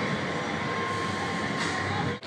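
Steady background noise with a constant faint high hum running through it.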